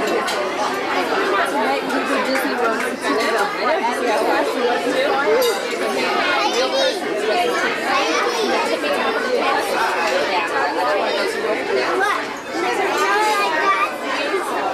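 Steady chatter of many overlapping voices from diners in a busy restaurant dining room, with no single voice standing out.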